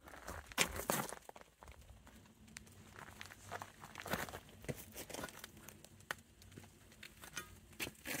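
Faint scattered clicks and rustles, handling noise and footsteps as the camera is carried around, with a few louder knocks in the first second.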